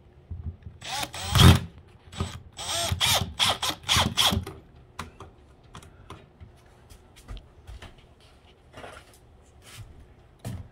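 Cordless drill-driver run in short trigger bursts, driving inch-and-a-quarter screws into a cargo trailer's window frame ring; each burst is a quick whine that rises and falls. The bursts stop after about four and a half seconds, leaving scattered light clicks and knocks.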